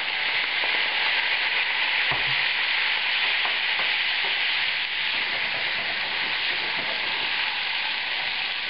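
Beef steaks sizzling steadily in hot melted butter in a frying pan, the sizzle swelling as Worcestershire sauce is poured in.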